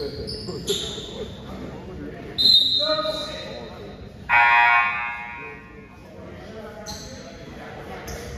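Basketball gym during a stoppage: a short, high referee's whistle blast about two and a half seconds in, then a loud, steady buzzer horn from the scorer's table lasting over a second near the middle. A basketball bounces and voices carry in the echoing hall.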